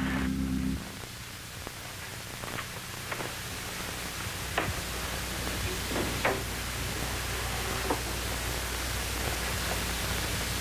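A held chord of background score music stops about a second in. Then comes the steady hiss of an old television soundtrack, with a few faint, scattered clicks and knocks.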